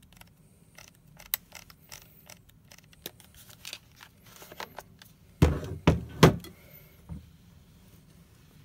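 Camera handling on a Nikon DSLR: small clicks of the body's buttons and controls. These are followed, about halfway in, by three louder clunks and a smaller knock as the lens is twisted off the bayonet mount.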